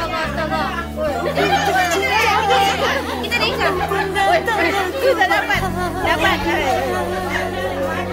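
Many women talking and calling out over one another in an excited crowd. Background music with held low notes that change every few seconds runs underneath.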